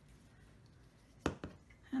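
One sharp plastic click a little over a second in, then a fainter one, as a fine-tip glue pen is capped and handled.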